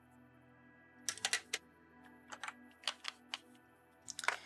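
Soft background music, with a series of sharp taps and clicks in two quick clusters, the first about a second in and the second two to three seconds in.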